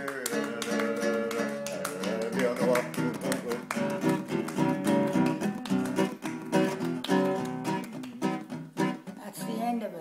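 Acoustic guitar strummed in a steady rhythm as accompaniment to a sing-along, with the song coming to an end near the close.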